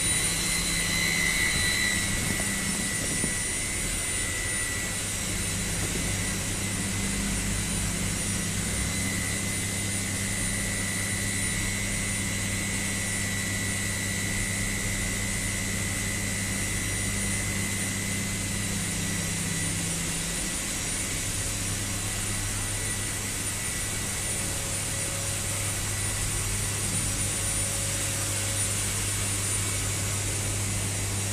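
Steady drone of power-plant ash-handling machinery: a low hum under a hiss, with a high whine that fades after about eighteen seconds.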